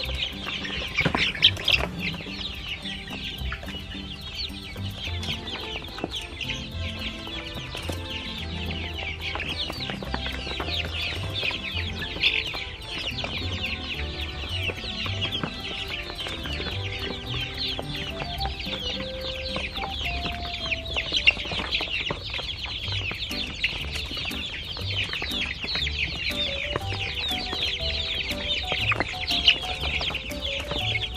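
A flock of laying hens clucking busily and without pause while pecking up black soldier fly larvae, many short calls overlapping.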